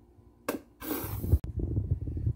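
Kitchen handling noises around a plastic ingredient container: a sharp click, a brief hiss-like shake, then a loud thump, followed by low knocks and rumbling.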